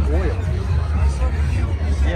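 People talking nearby over a steady low rumble.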